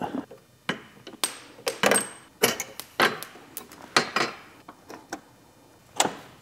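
Steel brake pedals and linkage rods of a John Deere 318 garden tractor being handled and worked by hand: an irregular string of metal clanks and clicks, two of them with a short metallic ring about one and two seconds in.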